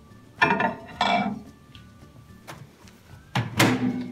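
A ceramic plate and mug clinking twice as they are set on the microwave turntable, then the microwave door shut with a thud near the end.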